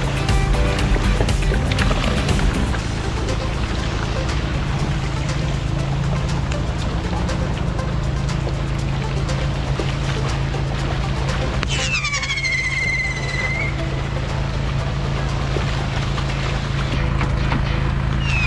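A steady low engine drone, with music over it. A falling whistle-like tone comes about twelve seconds in and again at the end.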